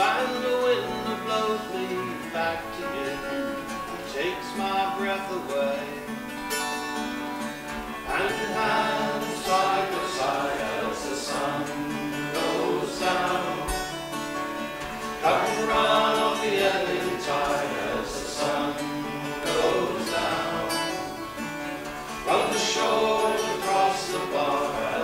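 Live folk song on acoustic guitars, strummed chords with men's voices singing.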